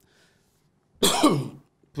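A man coughs once, a short sharp cough about a second in, after a near-silent pause.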